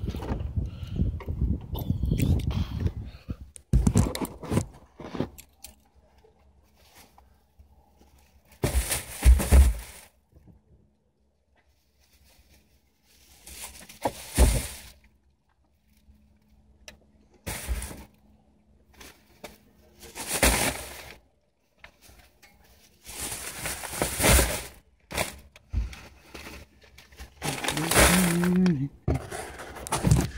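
Plastic grocery bags rustling as they are lifted and set down in a car's trunk, coming in several separate bursts with short knocks between quiet stretches.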